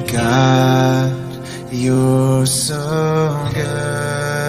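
A voice singing a devotional Holy Week song in long held notes, each lasting about a second, with a slight waver and a step in pitch between notes.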